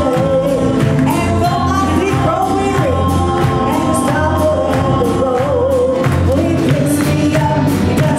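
A worship team of several singers, led by women's voices, sings a gospel song into microphones, with steady instrumental accompaniment underneath.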